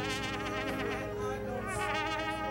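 Live worship band music from brass, saxophone, keyboards and strings, with a high melody line that wavers up and down in pitch, like a wide vibrato.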